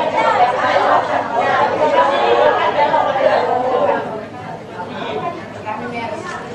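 Indistinct chatter of many people talking at once, overlapping voices in a room, easing a little about four seconds in.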